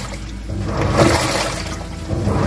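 Water churning and sloshing in the drum of a Samsung WA10B7Q1 top-loading washing machine during its wash agitation, swelling about half a second in. It runs with no strange noises, a sign that the motor and drum are working properly after reassembly.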